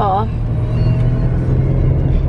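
Steady low drone of a car's engine and road noise heard from inside the cabin while driving.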